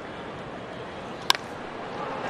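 A single sharp crack of a wooden baseball bat hitting a pitched ball, a little past the middle, over the steady murmur of a ballpark crowd.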